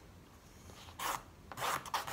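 Two short rubbing, scraping sounds, one about a second in and a longer one near the end: a wooden drawing stick scraped across watercolour paper.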